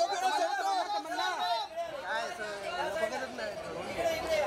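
Several voices calling and shouting over one another without a break: photographers calling out to the stars at a red-carpet photo call.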